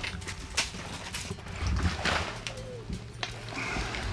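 Irregular clicks and light knocks, with a low rumble about halfway through: handling noise from fishing gear and clothing as a crappie is landed.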